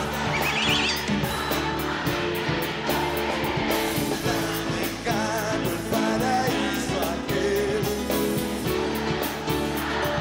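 Live rock-pop band music with electric and acoustic guitars, bass and drums, and male voices singing a duet. A brief high, wavering cry rises over the band about half a second in.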